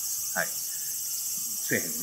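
A steady, high-pitched chorus of insects trilling, with a faint pulsing texture.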